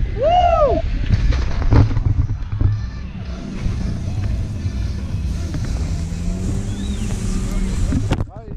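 Wind buffeting the microphone of a paraglider-mounted action camera in flight, a steady low rumble. About half a second in, a person gives one short cry that rises and falls in pitch.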